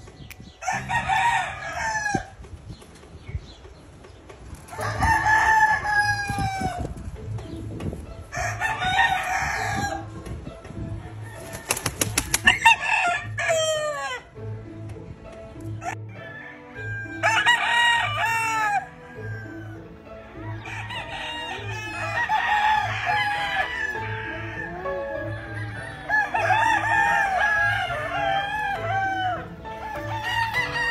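Gamefowl roosters crowing again and again, each crow one to two seconds long with a falling end. From the middle on the crows come closer together and overlap. There is a short burst of wing flapping about twelve seconds in, and background music with a steady beat runs underneath.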